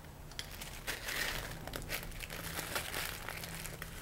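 Lens paper crinkling and rustling in the hands as it is handled and rubbed over a glass microscope slide to wipe off immersion oil, a faint scatter of small crackles.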